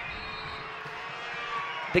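Steady stadium crowd ambience, a low murmur of distant voices in a lull in play. A commentator's voice cuts in at the very end.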